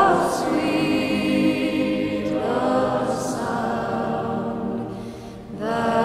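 A choir singing slow vocal music, voices holding long notes, with new phrases sliding in about two seconds in and again near the end.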